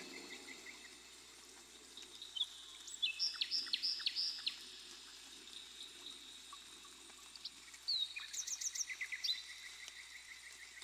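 Birds chirping in two quick runs of short high notes, about three seconds in and again near eight seconds, over a faint steady high-pitched hum and low background noise.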